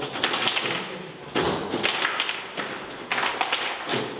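Foosball game: the ball and the plastic players on the rods clacking against each other in several quick, irregular bursts of knocks.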